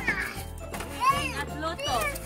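Young children's high-pitched voices calling out over background music with a steady low bass line.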